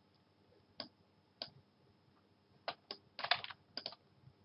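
Scattered sharp clicks of a computer mouse: a few single clicks, then a quick run of several about three seconds in.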